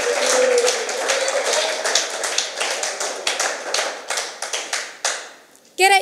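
A small audience clapping, with some cheering at the start; the claps thin out and stop about five seconds in.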